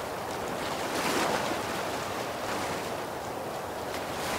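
Ocean waves washing in: a steady rush of surf that swells about a second in.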